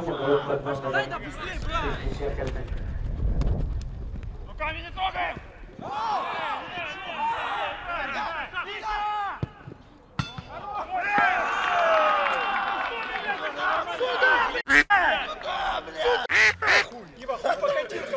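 Several voices shouting and yelling over one another during a football attack, rising into cheering and shouts after the ball goes into the net, with a couple of sharp knocks near the end.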